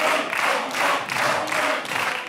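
Studio audience applauding and laughing, the claps falling into an even rhythm of about two to three a second.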